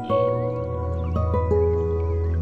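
Slow, soft piano music over a low sustained drone, with a note struck just after the start and a few more in close succession around a second and a half.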